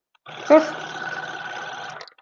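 Oral irrigator (water flosser) pump running with a steady buzzing hum, switched on about a quarter second in and cutting off at the end. A brief spoken word is heard over it about half a second in.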